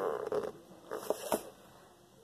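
Hands squeezing a slow-rising foam cake squishy: a short rustling squish at the start, then a few light taps about a second in.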